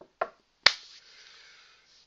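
A quiet click, then a loud, sharp click like a snap about two thirds of a second in, followed by about a second of hiss that fades away. It sounds like computer mouse clicking close to the microphone.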